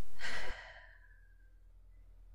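A person's short, audible breath, a sigh, a fraction of a second in, which cuts off suddenly into near silence with a faint low hum underneath.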